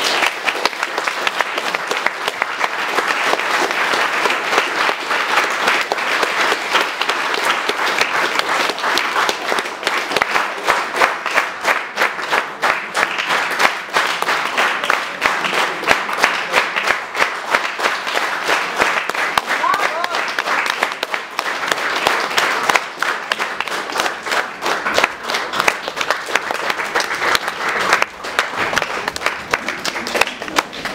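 Audience applauding: dense, steady clapping from many hands.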